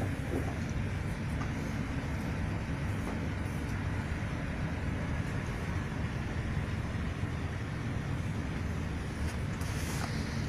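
Steady low rumbling background noise, even in level throughout, with a few faint ticks.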